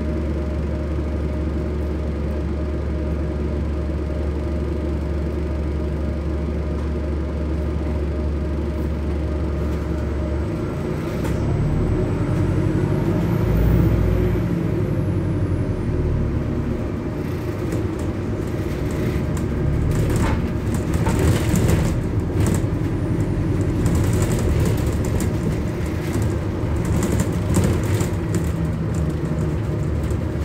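Bus cabin: a steady low hum from the bus while it stands, then about ten seconds in the engine note rises and falls as the bus pulls away. After that, the bus interior rattles and knocks while it moves.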